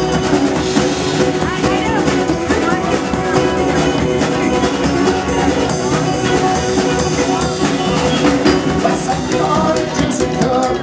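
A live band playing an instrumental passage on fiddle, banjo, acoustic guitar and drum kit, with a steady drum beat under sliding fiddle lines.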